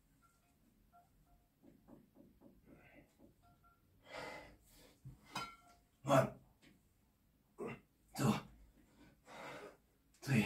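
A man breathing hard through weighted chin-up reps with 20 kg: faint quick breaths at first, then loud, sharp exhalations about once a second from the middle on, the loudest a little past halfway.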